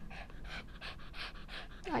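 Small dog panting rapidly, about six quick breaths a second.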